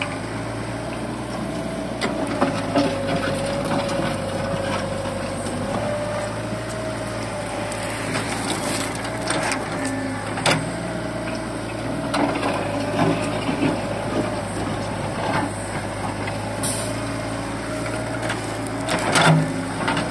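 Xiniu wheeled excavator running steadily with a wavering whine as it digs, its steel bucket scooping and scraping soil. Scattered sharp knocks and clunks come from the bucket and arm, the loudest near the end.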